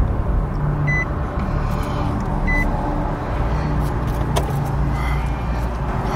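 Car engine idling steadily, heard inside the cabin, with two short high beeps about a second and a half apart.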